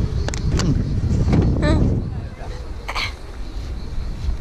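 Brief voice sounds from people nearby over a low outdoor rumble, with a few sharp clicks early on and a short cough-like burst about three seconds in.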